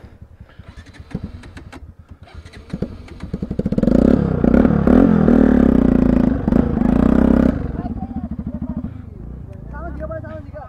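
Bajaj Pulsar NS 200's single-cylinder engine running at low revs with an even pulsing beat, opened up louder for about four seconds in the middle with the pitch rising and falling, then dropping back to low revs.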